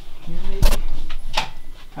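A closet door being opened, with two sharp clacks about three quarters of a second apart, the first the louder.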